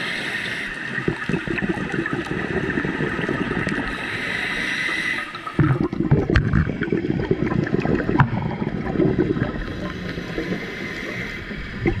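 Scuba breathing heard underwater: a steady hiss through the regulator for the first few seconds, then, about halfway, a burst of exhaled bubbles gurgling and crackling for several seconds.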